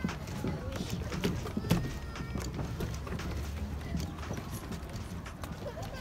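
Footsteps knocking on the wooden planks of a pier, many irregular hollow steps from people walking, with voices of passersby in the background.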